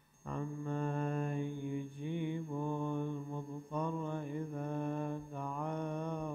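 A man's voice chanting an Arabic religious recitation, with long held notes that bend and waver in pitch. It begins just after a brief pause at the very start and carries on with only short breaths between phrases.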